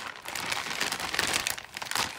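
A thin plastic Vaultex cash bag crinkling and rustling in irregular bursts as hands grip it and scissors cut open its sealed top.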